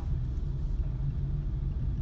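Steady low engine and road rumble of a car driving slowly, heard from inside the cabin.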